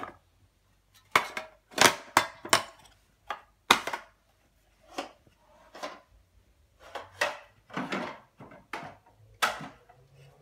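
A small wooden box and its lid being handled, giving an irregular run of sharp wooden knocks and clatters, loudest between about one and four seconds in.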